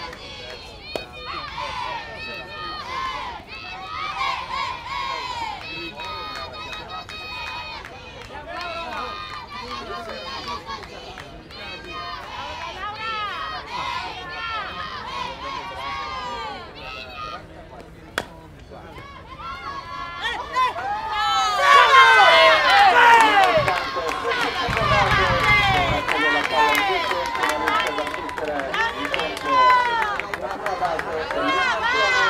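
Softball players' voices calling and chanting across the field, several at once. They swell into a loud chorus of many voices from about two-thirds of the way in. A single sharp knock sounds a little past halfway.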